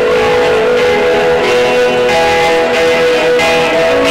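Rock band playing live with no vocals: electric guitars to the fore over bass and a drum kit keeping a steady beat.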